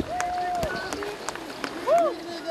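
Men's voices shouting and calling out over swimmers splashing in cold water, with a long held shout early on and short sharp splashes between the calls.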